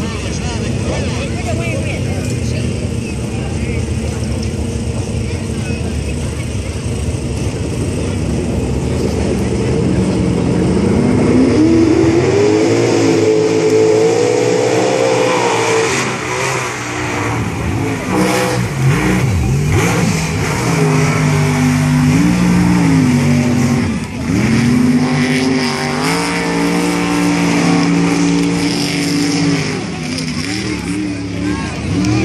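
Ford and Dodge pickup truck engines at full throttle, racing side by side through a flooded mud pit; from about ten seconds in the engine pitch climbs steadily for several seconds as they accelerate, over the wash of spraying mud and water. In the second half an engine holds high, steady revs with a couple of brief dips.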